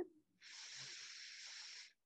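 A woman taking a deep breath in: a faint, steady hiss of air lasting about a second and a half.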